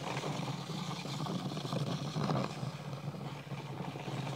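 Walabot DIY 2 radar wall scanner's slippery plastic back strips rubbing over textured drywall as the unit is slid in circles to calibrate. A continuous scraping hiss that swells a little about two seconds in.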